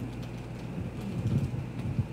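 Quiet room tone with a steady low electrical hum, and faint low murmuring about a second in.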